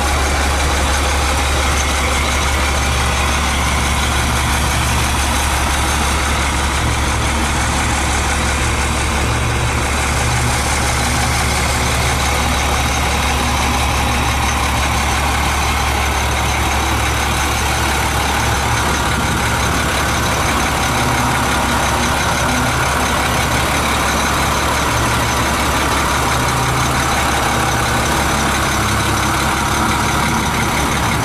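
2001 International 4700 truck engine idling steadily, heard up close while walking around the truck.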